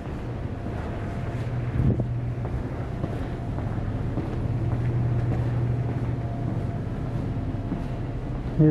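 Steady low hum under a rumbling noise bed, the sound of a handheld camera being carried along a building hallway, with one brief knock about two seconds in.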